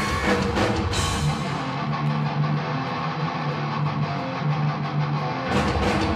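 Heavy metal band playing live: the drums and cymbals drop out about two seconds in, leaving electric guitars holding a riff alone, and the full band with drums comes back in just before the end.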